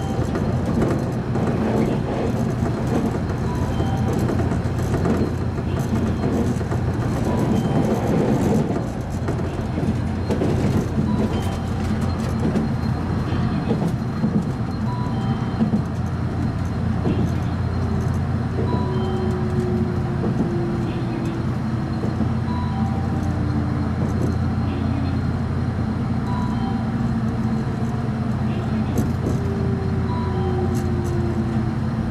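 Electric train heard from the driver's cab: a steady running rumble and motor hum, with gently falling whines in the second half as it slows into a station. Faint short beeps repeat every second or two.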